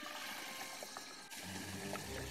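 Liquid nitrogen pouring from a dewar into a plastic bottle: a faint hiss with scattered small clicks, the nitrogen boiling as it meets the warmer bottle.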